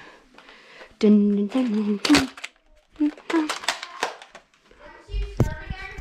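A child's voice murmuring in short, unclear phrases, with clicks and rustles from a handheld camera being carried, and a low thump about five seconds in.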